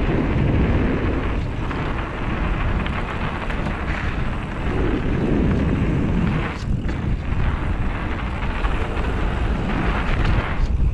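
Wind buffeting the microphone of a mountain biker's action camera, mixed with the bike's tyres rolling over a dirt singletrack: a steady, loud noise heaviest in the low end.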